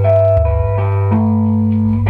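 Rock band playing: electric guitar chords ringing over a held bass guitar note, the chord changing about a second in.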